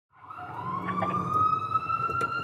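Emergency vehicle siren wailing, fading in at the start, its pitch rising slowly, over a low rumble.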